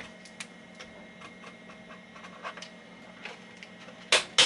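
Light, scattered ticks and taps of a Sharpie marker writing on and being capped against a Commodore 64's plastic breadbin case, then the case being handled, over a faint steady hum.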